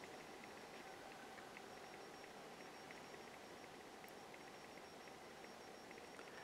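Near silence: faint room tone and microphone hiss.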